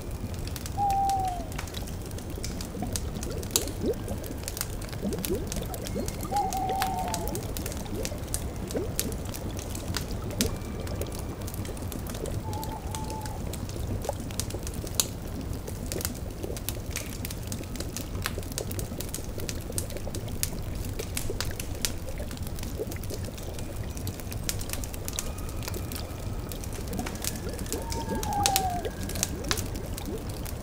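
Layered forest ambience of a bubbling cauldron: liquid bubbling over a low steady rumble, dotted with crackling pops from the fire beneath it. An owl gives four short falling hoots, about a second in, near seven seconds, around thirteen seconds and near the end.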